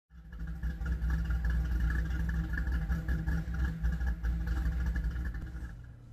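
A car engine running steadily, its sound mostly deep and low, dying away just before the end.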